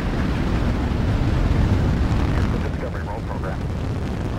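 Space Shuttle launch: the two solid rocket boosters and three main engines make a deep, steady, crackling rumble as the shuttle climbs just after liftoff. Faint voices come through the rumble about two-thirds of the way in.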